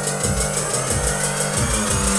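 An EDM build-up playing back: a steady kick-drum pulse a little over twice a second under held synth tones and looped vocal chants, with a noise riser swelling in the highs.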